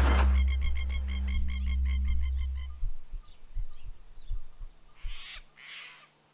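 A low, steady drone fading away over the first three seconds, with a fast, evenly spaced run of high chirping notes over it. It is followed by quiet with a few soft low thumps and faint bird calls.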